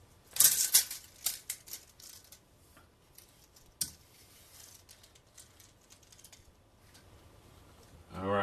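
Steel tape measure being drawn out and handled: a rattling burst in the first second, then scattered light clicks, with one sharper click about four seconds in.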